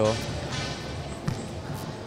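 Volleyballs being struck and bouncing on a gym floor during play, with two sharp thuds in the second half of the pause.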